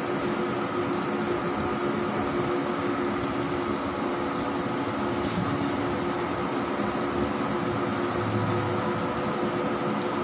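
Wide-format flex banner printer running while printing: a steady mechanical hum with several fixed tones, from the print-head carriage drive and the machine's fans.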